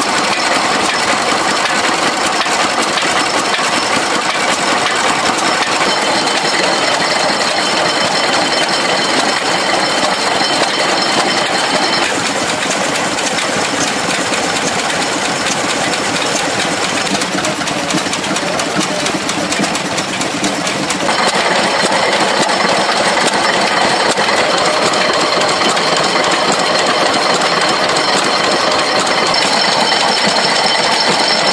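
Vintage stationary engines running, with a steady, rapid knocking beat. The sound changes character about twelve seconds in and again around twenty-one seconds, where it grows a little louder.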